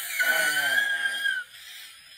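A young woman's high-pitched shriek, held for a little over a second and dropping off near the end.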